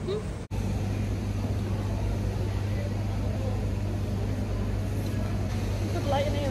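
A steady low mechanical hum, like an idling engine or machinery, starting just after a brief dropout about half a second in.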